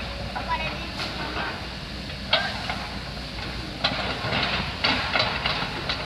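Scattered sharp knocks and clanks from scrapping work on wrecked electric train car bodies: one about two seconds in, then several a second near the end, over a steady low rumble.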